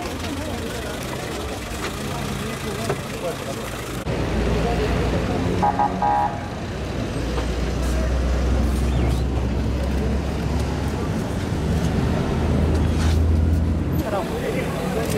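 Outdoor street ambience: a car running close by and people talking in the background, over a steady low rumble that grows louder about four seconds in. A short pitched tone, like a brief horn, sounds about six seconds in.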